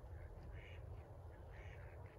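Ducks quacking faintly, a run of short calls every half second or so, over a low steady rumble.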